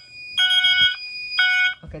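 Fire alarm horns sounding in short pulses about a second apart, with a steady high tone under them: the alarm system going off after the test switch has been worked.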